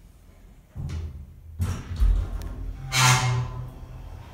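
Dover Impulse elevator car getting under way after its doors close: a low rumble sets in, followed by a heavy thump and a few clicks, then a loud clang with a ringing tone about three seconds in.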